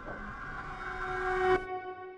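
A swelling rumble with a single held, horn-like tone over it. It builds to a loud peak about one and a half seconds in, then the rumble cuts off suddenly while the tone rings on and fades.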